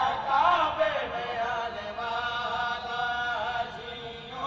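A man's voice chanting in long, held melodic notes, with a wavering glide at the start, growing quieter toward the end.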